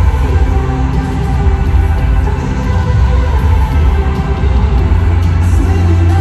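Live band music at a stadium concert, loud and continuous, with a heavy bass and sustained held chords, captured from far up in the stands.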